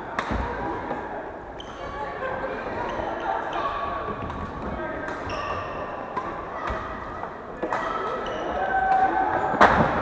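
Badminton rackets striking a shuttlecock in a rally: sharp hits every second or two, ringing in a large hall. The loudest smash comes near the end, with players' voices in the background.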